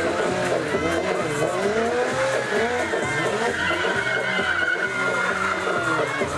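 Stunt motorcycle's engine revving up and down while its rear tyre squeals against the tarmac, with a held squeal in the second half as the bike is spun in a burnout.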